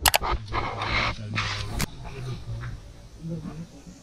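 A dog barking a few times in quick succession over the first two seconds, over a steady low hum.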